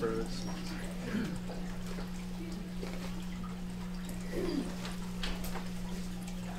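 Steady low hum in a room, with a few faint knocks and a brief soft murmur about four seconds in.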